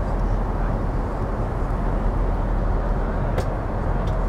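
Steady low rush of a Boeing 787 Dreamliner's cabin noise in flight, engines and airflow, with a single sharp click about three and a half seconds in.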